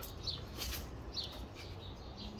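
A few faint bird chirps over low background noise.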